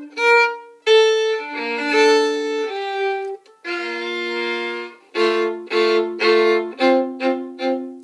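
Solo violin, bowed, playing a slow phrase of held notes and chords, then a string of short, separated strokes over the last three seconds.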